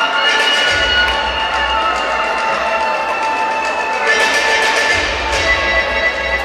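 Music accompanying a rhythmic gymnastics clubs routine, with long held notes.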